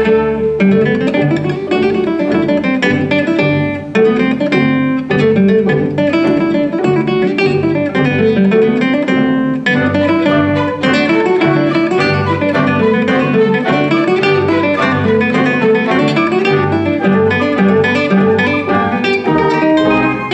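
Nylon-string classical guitar played as concerto soloist, running quick arpeggio figures that rise and fall in repeated waves. A small orchestra with violin accompanies it.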